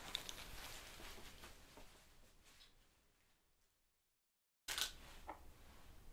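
Faint handling sounds with small clicks fade away to dead silence for under a second. About four and a half seconds in they start again abruptly: quiet clicks and rustling of small items being handled at a medical cart.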